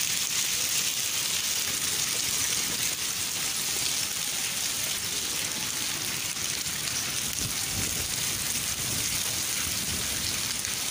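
Rain and sleet pellets falling steadily on a concrete floor: a dense, even hiss with no letup.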